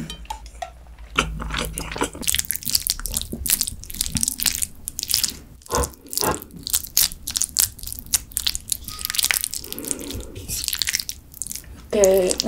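Close-miked eating sounds: chewing and wet, sticky mouth and food noises, heard as an irregular run of sharp, crisp clicks.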